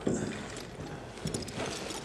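Scattered light clicks and knocks, with a sharp click right at the start, over a low background hum.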